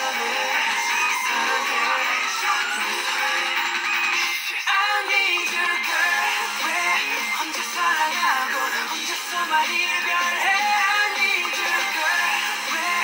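K-pop song playing with processed male vocals over the backing track, thin-sounding with no bass, and a brief break about four and a half seconds in.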